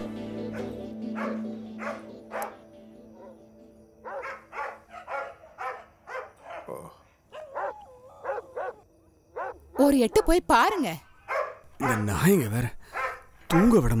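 A dog barking repeatedly, the barks getting louder from about two-thirds of the way in. A held music chord fades out at the start.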